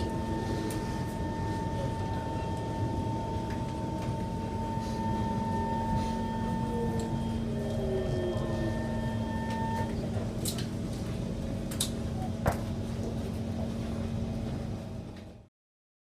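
Interior of a Singapore MRT train braking into a station: the steady rumble of the car with a motor whine, and faint tones falling in pitch, until the whine stops at about ten seconds as the train comes to rest. Then come a few sharp clicks, and the sound cuts off suddenly near the end.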